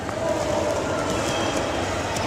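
Ambient noise of a large, echoing hall: a steady rumble with faint, indistinct chatter from visitors.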